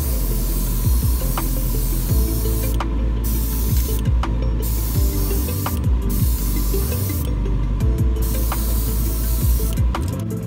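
Airbrush spraying paint onto a hand-made lure in a run of bursts, its hiss stopping briefly several times and cutting off near the end. Background music with a steady beat plays underneath.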